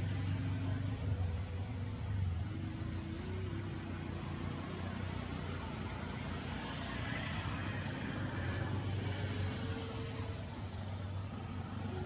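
A motor engine running steadily with a low hum, its pitch shifting up and down in small steps, and a few brief high chirps now and then.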